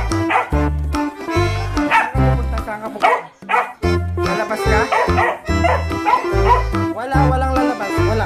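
A dog barking over background music with a steady bass beat.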